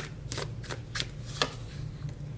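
A deck of tarot cards being shuffled by hand, with about five sharp card snaps spaced through the shuffle.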